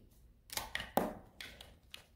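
A deck of oracle cards being shuffled by hand: several short, sharp card snaps and taps within two seconds.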